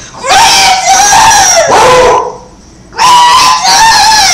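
A child screaming close to the microphone: two long, loud, high-pitched screams, the second starting about three seconds in.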